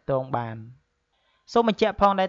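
Only speech: a narrator talking in Khmer, pausing briefly about a second in before going on.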